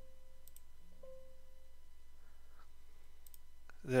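Faint computer mouse clicks, a couple of seconds apart, as Yes is clicked in Windows Registry Editor dialogs. Two short soft electronic tones sound about a second apart near the start. A voice comes in at the very end.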